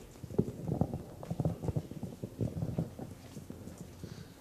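Irregular soft knocks and rustles from a handheld microphone being handled and lowered.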